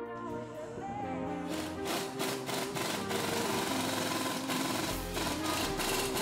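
Upbeat electronic background music, with a dense rapid rattle from about a second and a half in until about five seconds in. The rattle is an impact wrench driving in the rear lower control arm's spindle bolt.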